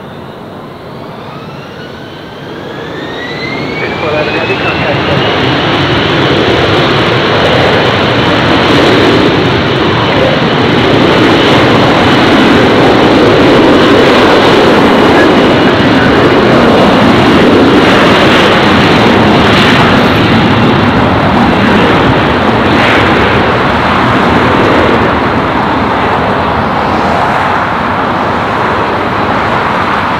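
Twin-engine jet airliner spooling up for takeoff: a rising whine over the first few seconds settles into a steady high tone. A loud, steady jet noise builds during the takeoff roll, is loudest midway and eases a little toward the end.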